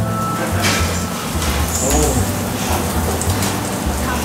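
Restaurant background noise: other diners talking and music playing over a steady hiss.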